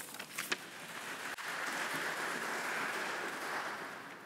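Audience applause: a few separate claps at first, building into steady clapping about a second in, then thinning out near the end.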